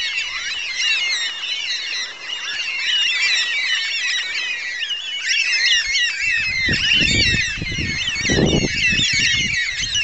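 A flock of black cockatoos calling continuously, many high squawking calls overlapping. From about six seconds in a low rumble runs underneath, with a cough near the end.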